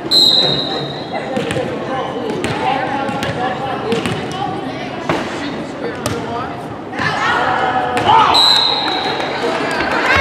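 A referee's whistle blows a steady high note for about a second to start the serve, then blows again, shorter, about eight seconds in to end the rally. Between the whistles come several sharp hits of the volleyball and players' voices, echoing in the gym.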